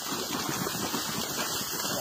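Steady rushing noise of floodwater.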